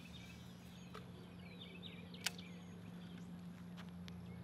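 Faint backyard ambience: birds chirping, over a steady low hum, with a single sharp click a little after two seconds in.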